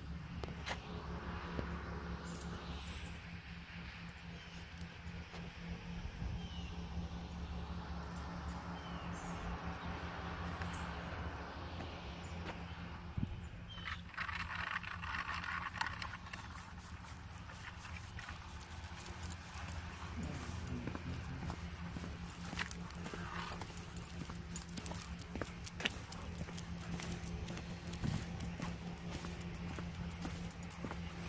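Outdoor ambience under a steady low hum, with a few short bird chirps in the first seconds. In the second half come frequent small clicks and jingles from the dog's leash and collar, with footsteps.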